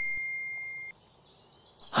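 The ringing tail of a bell-like ding, fading out about a second in, followed by a short run of faint high bird chirps.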